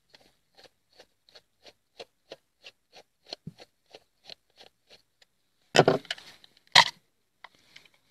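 Flat screwdriver turning out the cover screw of a plastic pump pressure-switch housing: a steady run of faint light clicks, about three a second, for some five seconds. Then a louder plastic scrape and one sharp knock as the cover comes off and is set down.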